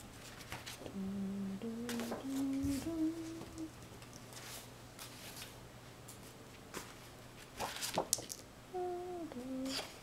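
A person humming a tune in short held notes that step upward in pitch over a few seconds, then a brief falling phrase near the end. Soft clicks and handling noises come in between.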